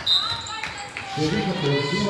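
Handball being played on an indoor court: shoe squeaks on the hall floor and the ball bouncing, with a voice calling out from about a second in.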